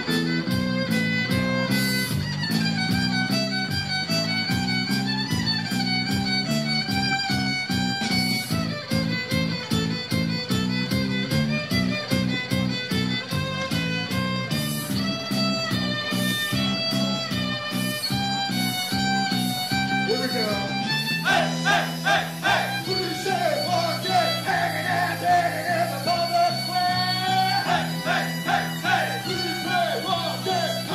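Live band playing an instrumental break: an amplified violin leads over a steady bass line and beat. About two-thirds of the way through, the backing pattern changes and the violin line turns more wavering and agitated.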